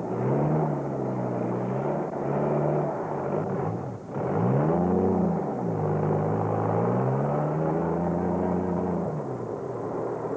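A motor vehicle's engine revving up and down: its pitch rises and falls several times, with a sharp climb and drop about halfway through, under a steady rumble.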